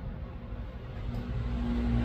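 Low, steady engine-like rumble with a hum, growing louder toward the end.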